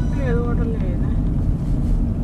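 Steady low rumble of a moving road vehicle, with a short voice sound in the first second.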